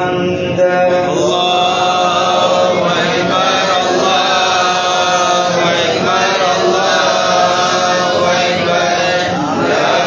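Voices chanting devotional phrases in long, held lines that slide between notes, with short breaks between phrases.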